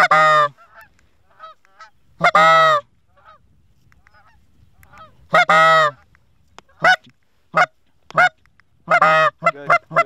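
Goose calls blown close by: loud honks, one at the start and one about two seconds in, a longer one about five seconds in, then a run of quicker clucks near the end. Fainter honks of geese sound between them.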